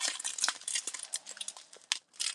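Small plastic bags of diamond-painting drills crinkling and rustling as they are picked up and handled, with scattered light clicks and one sharp click near the end.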